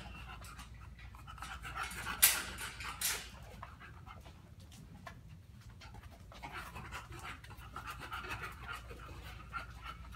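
A bulldog panting, a rough breathy rhythm that runs through most of the stretch. Two sharp clicks stand out about two and three seconds in.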